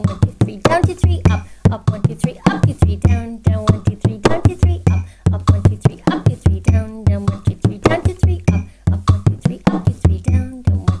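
Bodhrán played with a tipper in a 9/8 slip-jig rhythm at 100 beats per minute. It is a steady run of quick strokes, accented on the first and seventh eighth notes, alternating between a deep down-stroke accent and a higher-pitched up-stroke accent.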